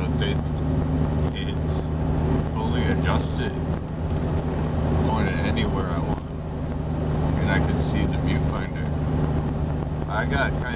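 Steady low drone of a 1998 Jeep Cherokee driving, engine and road noise heard from inside the cabin. A man's voice talks over it at intervals.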